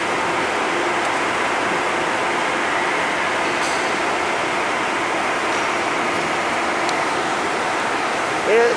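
Steady rushing noise at an even level, with no rhythm or pitched tone in it.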